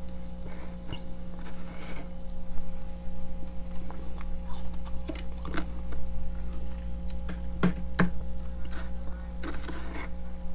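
Metal spoon scraping and tapping at thick freezer frost in scattered short strokes, with two sharper clicks about three-quarters of the way through, over a steady low hum.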